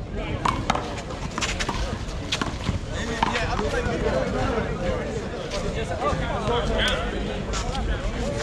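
A short one-wall handball rally: sharp slaps of a small rubber ball struck by hand and hitting the concrete wall and court, several in the first few seconds, with one more later. Voices chatter throughout.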